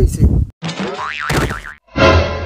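Cartoon "boing" sound effect: a springy tone starting about half a second in, its pitch wobbling rapidly up and down before it cuts off just before the end.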